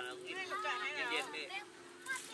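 People's voices talking, with a faint steady tone underneath.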